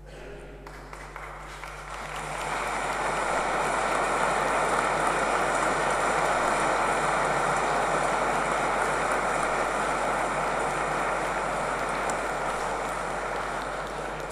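Congregation applauding in a large reverberant church, building over the first two seconds into a steady, sustained round of clapping that eases a little near the end.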